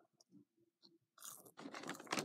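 Near silence with a few faint ticks, then, a little over a second in, short crackly rustles of a paper fast-food bag being handled.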